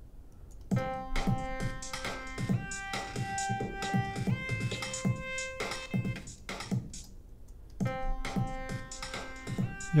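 Electronic 2-step drum loop with a synthesizer lead melody playing back from a Logic Pro X project, compressed on the drums. The music stops briefly a little before eight seconds in and starts again. The summed mix is peaking above zero on the output meter.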